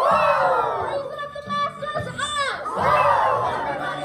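A stage ensemble of young actors shouting and cheering together, in two loud swells, one at the start and one about three seconds in, with a shrill whoop between them.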